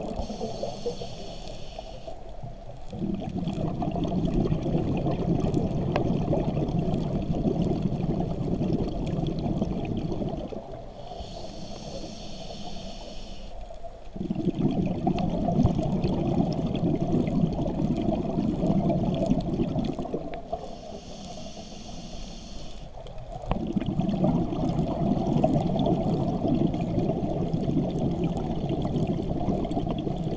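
Scuba diver breathing through a regulator underwater: a hiss of about three seconds on each inhale, then a long stretch of exhaled bubbles. The cycle repeats about every ten seconds, three breaths in all.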